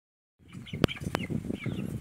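Chickens in a farmyard, with a flutter of wings and a few soft chirps, and two sharp clicks about a second in.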